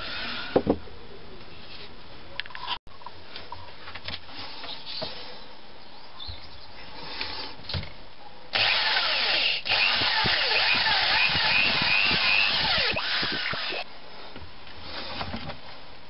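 A handheld power tool runs for about five seconds, starting a little past the middle and stopping suddenly, its pitch wavering as it goes. Before it there are only light handling noises.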